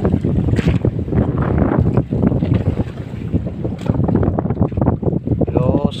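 Strong amihan wind buffeting the microphone in an unsteady low rumble on an open fishing boat.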